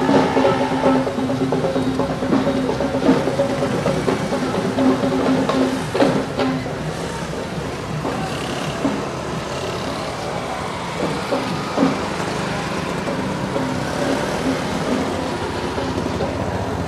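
Mixed outdoor sound of music with drums and passing road traffic. A steady droning tone sounds for the first six seconds or so, then stops.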